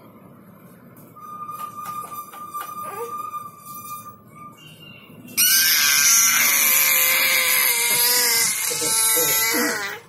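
Baby screaming loudly and shrilly for about four and a half seconds, starting about five seconds in, with the pitch wavering up and down: an angry baby's scream. Before it there are only quieter sounds, a faint thin steady tone and a few clicks.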